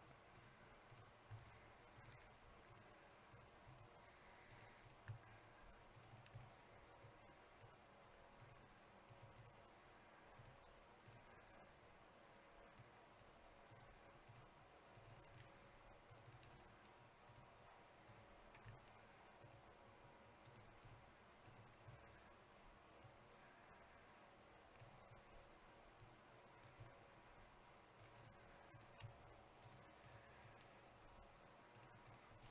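Near silence with faint, irregular clicks of a computer mouse and keyboard over a low hum.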